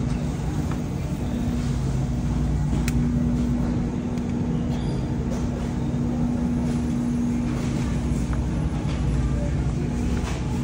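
Steady low rumble and hum of a supermarket: a shopping cart rolling on the hard floor beside open refrigerated display cases, with a held hum running under it and a few light clicks.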